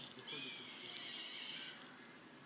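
A faint, high-pitched animal call, about a second and a half long, with a slight bend in pitch at its start.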